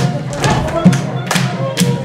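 Lively Polish folk dance music with a steady bass beat, and the dancers' shoes stamping on the stage in time, about two sharp stamps a second.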